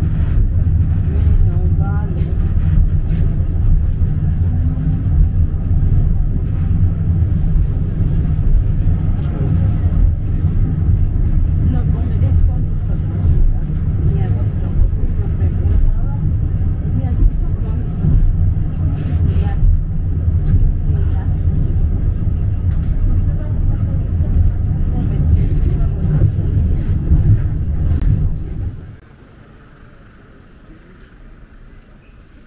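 Steady low rumble of a funicular car running along its steep track, heard from inside the car. It cuts off suddenly shortly before the end.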